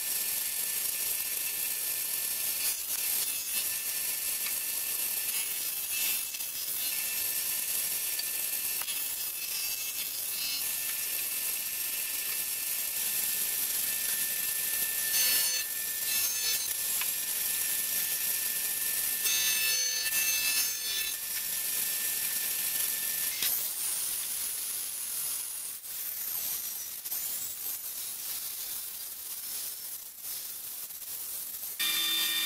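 Benchtop electric jointer running with a steady high whine as its cutterhead planes pine 2x4 boards in repeated passes. Near the end a table saw rips pine.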